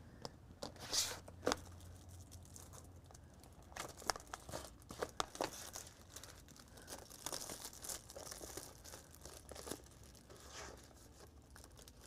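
Faint, scattered rustling and light clicks of sheets of cardstock being handled, over a low steady room hum.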